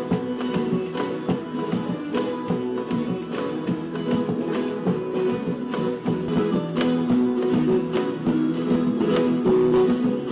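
An orchestra of violas caipiras, Brazilian ten-string folk guitars, playing together, with steady held chords and brisk, regular strumming.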